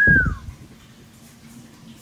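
A single short bird call, one clear whistle-like note sliding down in pitch over less than half a second, with a low thud under it at the start. Quiet outdoor background follows.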